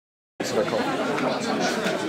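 Background chatter of many people talking at once in a large hall, cutting in abruptly just under half a second in.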